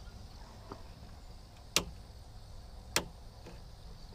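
Two short, sharp clicks about a second and a quarter apart, with a fainter click before them, over a faint low rumble.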